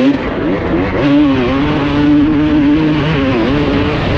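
2006 Honda CR250's single-cylinder two-stroke engine running hard under throttle, its revs dipping briefly near the start and again about three and a half seconds in, holding steady in between.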